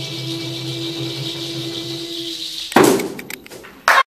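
The last held drone chord of the performance sounds steadily and then stops. About three seconds in comes a sudden loud knock with a short ringing decay, a few scattered clicks, and a second loud burst just as the sound cuts off abruptly.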